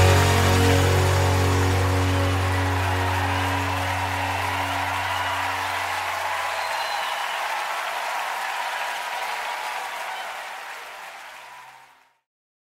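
A live worship band's held final chord dies away under congregation applause and cheering. The whole sound fades steadily to silence near the end.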